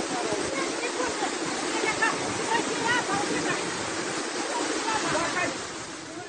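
Muddy floodwater rushing steadily over the ground in a flash flood, with faint voices in the background.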